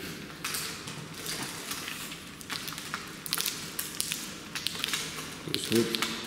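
Daiwa N-Zon Z feeder rod being shaken hard back and forth by hand, giving repeated swishing and rustling sounds that swell and fade every second or so, with a few light clicks.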